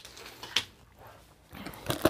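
Handling noise: a small plastic zip bag is set down on a wooden tabletop with a light click about half a second in, then the cardboard kit box is moved and lifted, with soft rustles and a sharper knock near the end.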